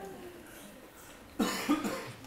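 A person coughing briefly, about a second and a half in, after a quiet stretch of room tone.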